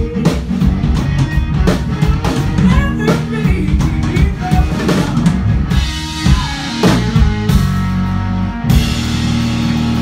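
Live blues-rock band playing loud: drum kit, electric bass and electric guitar. The drums are busy throughout, with a sharp cymbal-bright hit near the end after which the band holds ringing chords.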